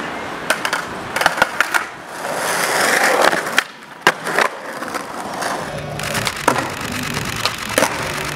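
Skateboard on concrete and stone ledges: wheels rolling, with repeated sharp clacks of the tail popping and the board landing, and a longer scraping stretch of the board grinding along a ledge.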